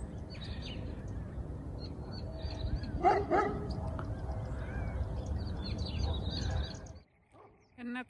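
Steady low outdoor rumble with faint high chirps, broken about three seconds in by two short, loud, pitched sounds in quick succession.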